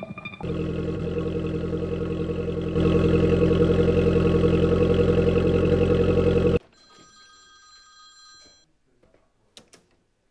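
A loud ringing with a rapid trill, steady in pitch, that steps louder about three seconds in and cuts off suddenly. Faint high tones linger briefly after it, followed by a few soft clicks near the end.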